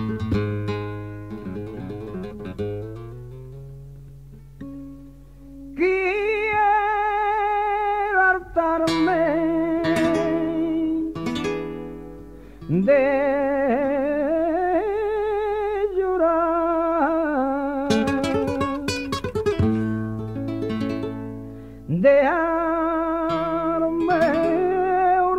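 Flamenco guitar playing, its notes dying away over the first few seconds. At about six seconds a male flamenco singer (cante) comes in with long, ornamented melismatic phrases, and strummed guitar chords fall between the phrases.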